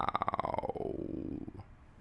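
Jet noise from carrier-deck footage played in slow motion: a rattling drone that falls steadily in pitch and fades out within about a second and a half.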